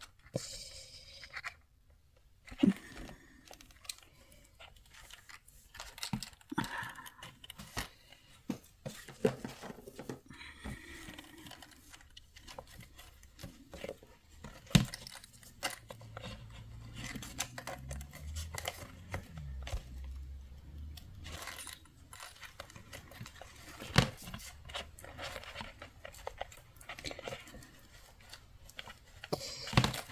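Faint handling sounds of a cardboard box: scattered small clicks, taps and scratches as fingers work something through a hole pierced in its wall, with a couple of sharper knocks. A faint low hum runs under it for a few seconds in the middle.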